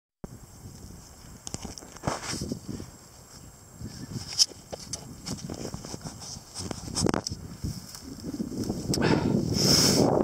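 Footsteps crunching through dry marsh grass, with irregular knocks from the handheld camera. Wind buffeting the microphone builds up near the end.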